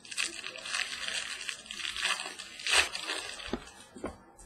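Crinkling and rustling of plastic trading-card packaging handled and opened by hand, in several bursts, the loudest near three seconds in, with a short knock on the table shortly after.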